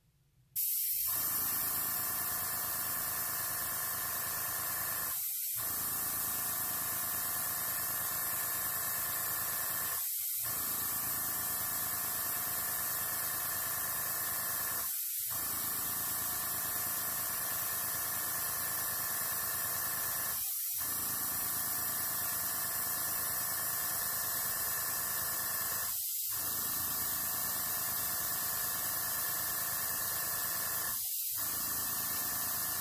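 Airbrush blowing a steady stream of compressed air to push alcohol ink across paper: a loud, even hiss that starts suddenly about half a second in, with a steady hum underneath.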